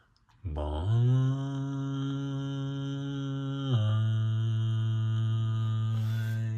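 A low sustained droning note with a chant-like quality that slides up at the start, holds steady, drops a step lower about three and a half seconds in, and then cuts off suddenly.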